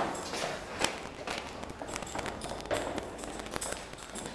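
Footsteps going down concrete stairs, an irregular series of light scuffs and taps.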